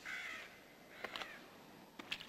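A bird calling twice, faintly: two short harsh calls, the first right at the start and the second about a second later.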